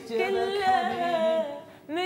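A man vocalising a short melody without accompaniment, with held and sliding notes, fading out about one and a half seconds in.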